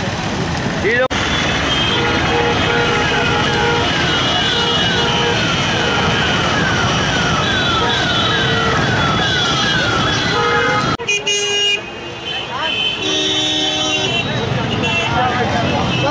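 Busy city road traffic: motorbike and auto-rickshaw engines running, with vehicle horns honking several times. Through the middle, a repeated electronic chirp sounds about twice a second for several seconds and then stops abruptly.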